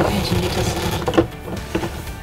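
The telescopic pull handle of a wheeled Thetford toilet cassette being drawn out: a plastic-and-metal sliding rattle with a few sharp clicks, the loudest about a second in.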